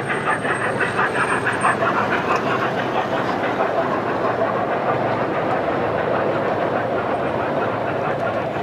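Model steam train running past on layout track, with a fast, even beat for about the first two seconds, then a steady rolling sound.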